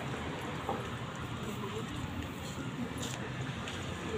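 Indistinct voices of people talking, too faint for words to be made out, over a steady background hiss.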